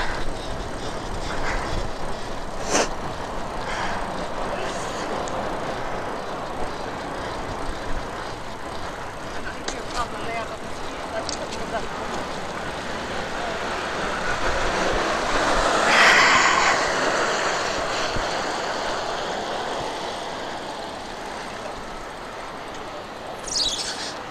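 Steady rush of wind and bicycle tyres on a wet road while riding, with a few sharp clicks from the bike. The rushing swells louder about two-thirds of the way through, and a short falling high squeal comes near the end.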